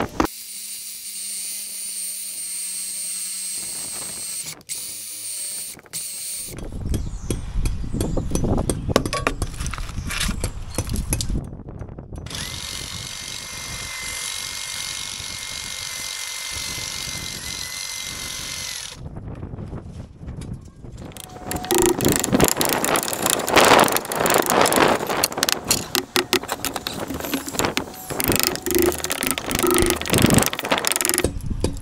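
Cordless SDS hammer drill chiselling into brick and mortar beside an old steel lintel. First comes a stretch of steady running with a held whine, then, after a short break, louder and harsher rapid hammering through the last third.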